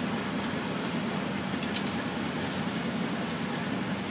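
Steady airflow noise of a laboratory biosafety cabinet's blower running, with a brief click a little under two seconds in.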